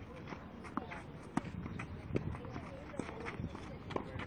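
Tennis rally on a clay court: a series of sharp pops from the racket striking the ball and the ball bouncing, several of them a half second or so apart, with footsteps on the clay.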